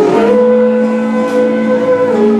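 A woman singing one long held note over a ringing acoustic guitar chord, live busking.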